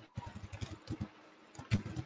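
Faint computer keyboard typing: a quick run of soft keystrokes in the first second, then a few more near the end.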